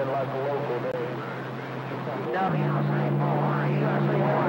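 CB radio receiver carrying weak, garbled distant voices under static, over a steady low hum that steps up to a higher pitch about two and a half seconds in.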